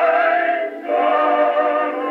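Old acoustic Edison recording of a vocal quartet singing an Easter hymn in harmony, played back on a phonograph. The sound is thin, with no deep bass or high treble, and there is a brief break between phrases just under a second in.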